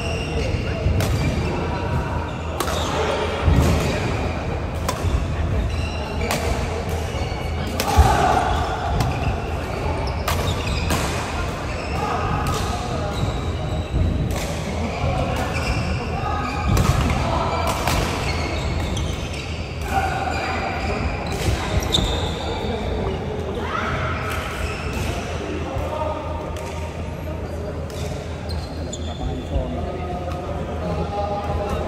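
Badminton rackets striking a shuttlecock during a rally, many sharp hits at irregular intervals that echo around a large hall, with indistinct voices underneath.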